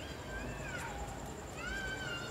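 Two faint, drawn-out animal calls that rise and then fall in pitch, one at the start and another starting near the end.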